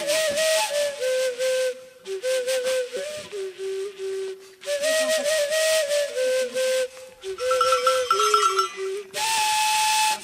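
A breathy flute playing a slow melody of held notes, with short breath pauses, a quick trill higher up near the end and a long higher note to close.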